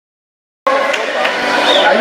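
Silence, then about two-thirds of a second in the sound cuts in abruptly on voices in a large, echoing hall.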